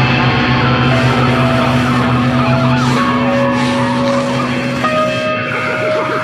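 Sludge metal band playing an instrumental passage: distorted guitars hold long sustained notes over a low droning tone, the held notes shifting pitch every second or two.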